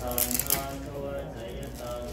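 Buddhist monks chanting Pali verses, voices held on long, steady notes. A few sharp clicks sound in the first half-second.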